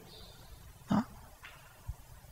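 A brief pause in a man's talk: one short spoken syllable about a second in, and a faint low thump near the end.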